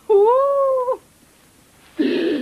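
A single long, high-pitched cry of just under a second near the start, rising and then falling in pitch, like a drawn-out wail or meow.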